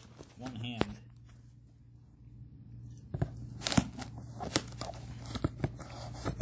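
Packing tape and cardboard of a shipping box being worked open by hand and with scissors: scattered sharp clicks and crackles, a quieter pause in the middle, then a quicker run of clicks as the tape seam is attacked.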